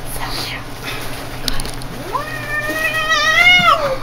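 A cat in labour yowling: one long, drawn-out cry about two seconds in, lasting nearly two seconds and sagging in pitch at the end. It is a sign of the pain of giving birth to her first kitten.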